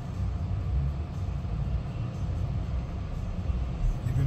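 Low, steady rumble in the cabin of an Xpeng G6 electric SUV as it moves slowly and steers itself during automated parking.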